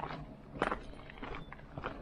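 Footsteps crunching on a gravel path at a steady walking pace, about one step every two-thirds of a second.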